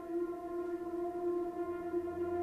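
Background music from the drama's score: one long held drone note, steady in pitch and level.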